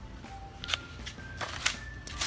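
Plastic blister packaging of a lip stain being handled and set down: a few short light clicks and rustles.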